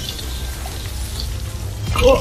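Film sound design for tendrils creeping across a floor: a steady low rumble with an even hiss above it, under tense background music.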